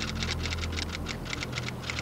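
Typewriter keys clacking in a rapid, even run, about nine or ten strokes a second, over a low steady hum.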